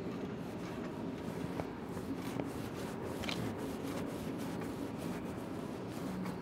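Hand socket ratchet tightening a bolt and nut, giving light, scattered clicks over a steady background hum.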